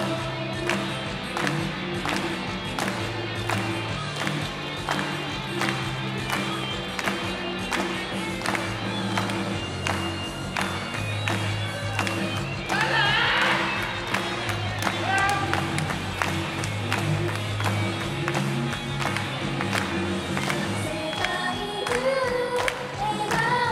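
Pop backing track playing over a PA system with a steady beat and bass line during an instrumental break of the song. A sung line comes back in right at the end.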